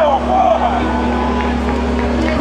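Voices shouting in a crowd, strongest in the first half-second, over a steady low hum.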